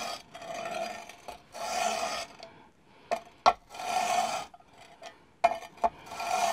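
Chisel bevel in a roller honing guide being pulled back across 100-micron abrasive film on glass. It comes as several scraping strokes, each about a second long, with a few light clicks between them as the guide is reset. The strokes flatten the primary bevel at 25 degrees.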